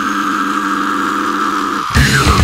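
A steady, unchanging drone forming the intro of a brutal death metal track. It cuts off near the end as the band starts.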